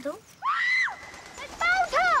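High-pitched, drawn-out shouted calls through the woods as searchers call out for a missing person: one long arching call about half a second in, then two more calls near the end.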